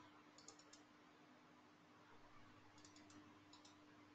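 Near silence broken by faint computer-mouse clicks: a few quick clicks about half a second in, then two more small groups near the end.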